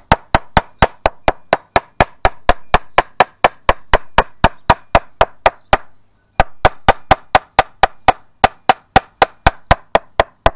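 Claw hammer beating flower petals on a piece of calico laid over a wooden breadboard, a fast steady run of sharp knocks at about five or six blows a second, with one short pause about six seconds in. The blows are pressing the petals' dye into the cloth.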